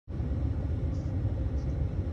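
Steady low rumble inside a car's cabin, with a faint hiss above it.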